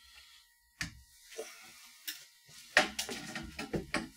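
Handling noise of the Sweeney pneumatic capsule launcher as it is picked up and moved on a wooden bench: a single sharp click about a second in, then a quick cluster of clicks and knocks near the end.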